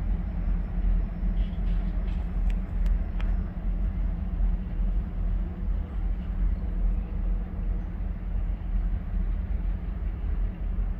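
Low, steady rumble of a distant local freight train on the main line, with a few faint clicks a second or two in.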